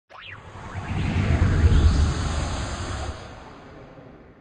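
Logo intro sound effect: a quick rising sweep at the start, then a deep rumbling swell that is loudest around one and a half to two seconds in and fades away after about three seconds.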